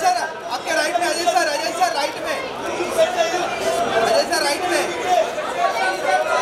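Many voices chattering and calling out at once, overlapping so that no words stand out: a crowd of press photographers.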